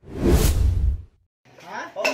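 A whoosh transition sound effect with a deep low rumble, swelling and fading over about a second, then cutting off to silence. Room sound with voices returns near the end.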